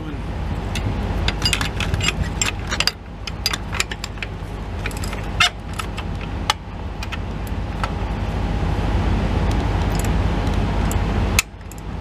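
Hand wrench clicking and clinking against metal in short, irregular strokes as a bolt on the CAT C15 engine's fan-belt drive is snugged up, over a steady low rumble.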